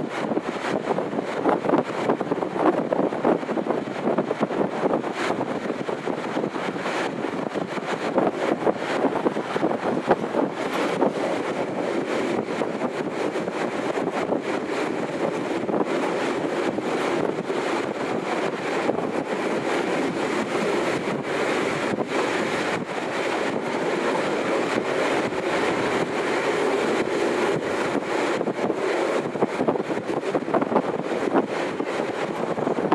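Steady rush of a passenger train running at speed: wind noise on the microphone over the rumble of wheels on rail, with short clicks scattered throughout.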